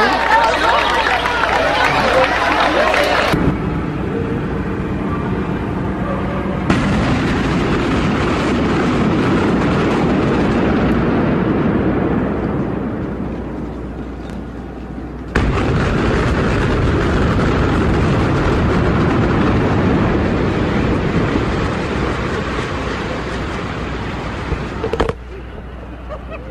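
Building implosion by explosive demolition: the blast of the charges and the rumble of a concrete-and-steel high-rise collapsing, in several edited takes. The loudest take starts suddenly about 15 seconds in and fades slowly over the next several seconds. Each take ends in an abrupt cut.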